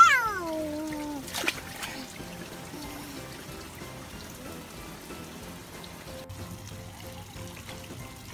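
A toddler's high squeal, gliding down in pitch over about a second, then water from a garden hose trickling steadily into an inflatable paddling pool.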